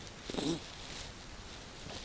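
Low background hiss and room noise between sentences of narration, with one brief faint sound about half a second in.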